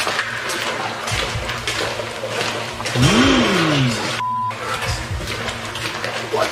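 Noisy handheld-camera audio with a steady rushing hiss, a low sound that slides up and then back down in pitch about three seconds in, and a short beep tone, with the rest of the sound cut out, bleeping a swear word just after four seconds.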